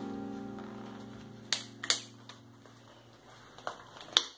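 A held background-music chord fading away, with a few sharp clicks of a table knife against a hard, oven-cracked coconut shell as it is pried: two about a second and a half and two seconds in, and one near the end.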